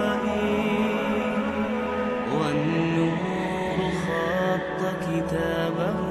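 Male voice singing an Arabic nasheed in a slow line with gliding pitches, over sustained backing tones.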